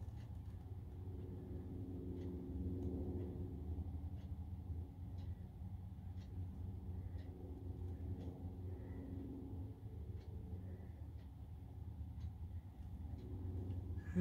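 A low, steady hum of background room noise, with a few faint scattered ticks; the slow paint pour itself makes little sound.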